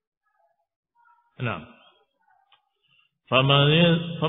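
A man's voice in a lecture pause: one short vocal sound falling in pitch about a second and a half in, then he resumes speaking about three seconds in.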